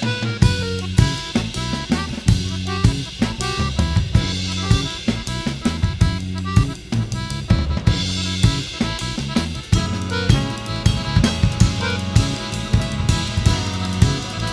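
Jazz ensemble playing, the drum kit busy and prominent with snare, bass drum, rimshots and hi-hat over bass and other pitched instruments.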